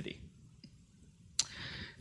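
A quiet pause, then a single sharp click about three-quarters of the way through, followed by a short breath in just before speech resumes.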